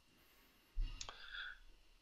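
Brief handling noise in a near-silent pause: a low thump about three quarters of a second in, then a sharp click, followed by a faint short tone.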